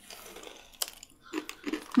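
Crunchy Doritos tortilla chips being chewed, with a few sharp crunches about a second in, and a short 'mm' hum near the end.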